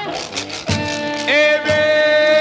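1950s Chicago blues band recording playing an instrumental passage between sung lines, over a steady beat. About midway a lead note slides up and is held.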